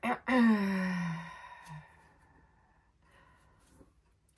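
A woman's long voiced sigh, falling in pitch over about a second, followed by a brief clearing of the throat.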